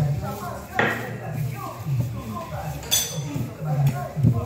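Two sharp metallic clicks, about a second in and again near three seconds, the second one bright and ringing: a cigar roller's curved steel knife (chaveta) set down and knocked against the wooden rolling board, with voices talking in the room.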